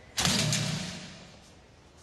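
A sudden loud hit with a low ringing tail that fades out over about a second and a half.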